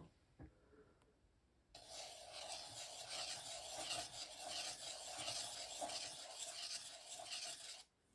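Steel dip-pen nib scratching across textured 300 gsm watercolour paper as ink circles are drawn, a steady rubbing sound that starts about two seconds in and stops just before the end.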